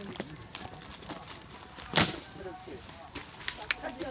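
Paper and cardboard of a piñata being torn and crumpled by hand: a string of crackles and short rips, the loudest about halfway through. Faint voices in the background.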